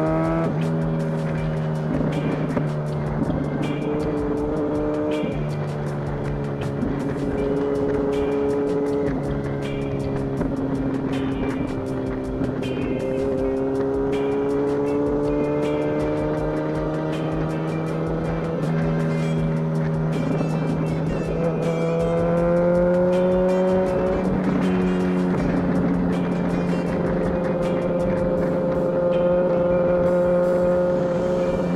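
2017 MV Agusta F4 RR's inline-four engine, fitted with stainless headers and an SC Project exhaust, running on the move. Its pitch climbs slowly and steps down several times. A hip-hop beat plays over it.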